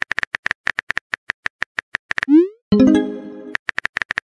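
Texting-app sound effects: quick keyboard tap clicks, then a short rising pop about two seconds in, followed by a brief chime of several tones that fades. The taps then start again.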